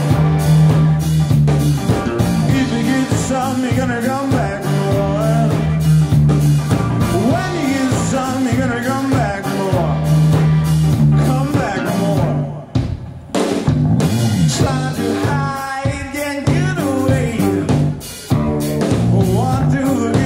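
Live rock band playing electric guitars and drum kit, with a lead vocal over the top. The band drops out briefly twice, once about halfway through and again near the end.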